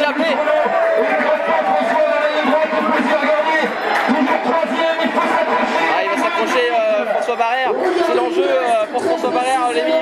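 Men talking continuously, several voices overlapping, with crowd chatter behind.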